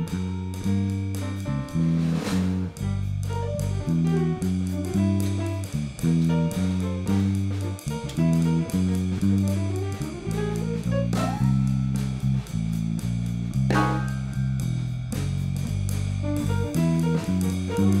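Jazz quartet playing live: archtop guitar, electric bass, upright piano and drum kit, with a steady run of bass notes under the guitar and piano.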